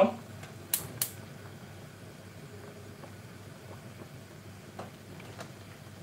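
Gas hob burner being lit: the spark igniter clicks twice about a second in, then only a faint steady background noise.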